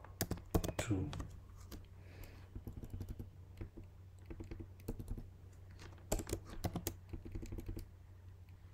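Computer keyboard being typed on: irregular key clicks, some in quick runs, others singly with pauses between.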